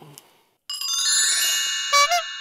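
Bright chime sound effect: a cluster of high ringing tones that starts suddenly about two-thirds of a second in and holds on.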